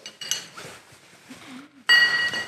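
Small metal grinding tool discs clinking in the hands, then a sharp, ringing metallic clink near the end as they are set down on the concrete floor.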